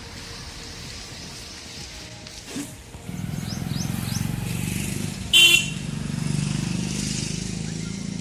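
Street traffic: a motor vehicle engine starts running close by about three seconds in and keeps going steadily. About two seconds later a single short horn toot sounds, the loudest thing heard.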